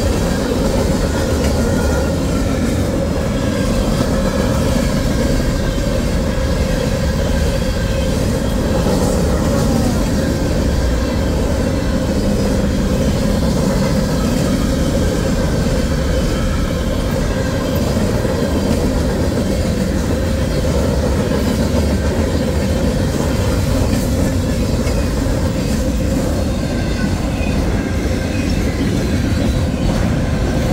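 Mixed freight train cars (tank cars, covered hoppers, autoracks) rolling past close by at speed: a steady, loud rumble of steel wheels on rail.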